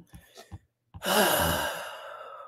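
A person's long sigh: a breathy exhale that starts about a second in, voiced at first, then trails off. A few small mouth clicks come before it.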